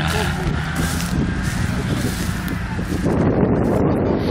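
Off-road 4x4 engine running steadily, with wind rushing over the microphone from about three seconds in.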